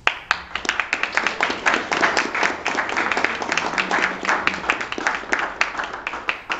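Small audience applauding: many hands clapping in a dense, irregular patter that starts suddenly and keeps going.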